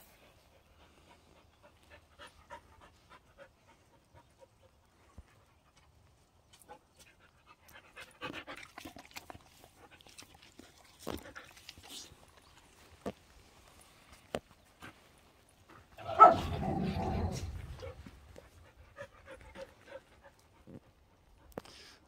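Korean Jindo dogs panting and moving close to the microphone. There are faint scattered clicks and one louder burst of noise about sixteen seconds in.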